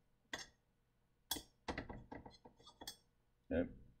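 A quick run of light metallic clinks and rattles, with a single click just before: small engine parts, the valves and cylinder head, being handled and set down on a workbench.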